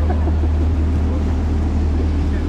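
An engine running with a steady, unchanging low drone.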